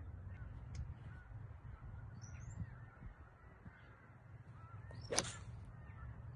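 A golf iron swung through, with one sharp strike at impact about five seconds in, over a low steady outdoor background with faint bird calls.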